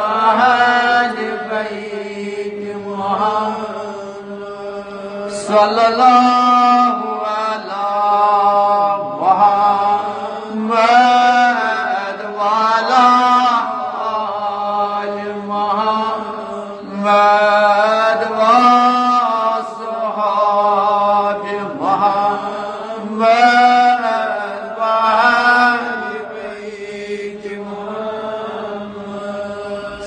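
A man's voice chanting salawat, blessings on the Prophet, in long drawn-out melodic phrases that rise and fall in pitch, each phrase swelling and then easing off.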